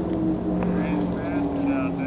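Motorcycle engine running in the distance, a steady drone that slowly falls in pitch as it passes.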